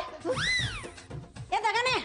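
A high, meow-like cry that rises and then falls in pitch, followed near the end by a second, shorter pitched cry.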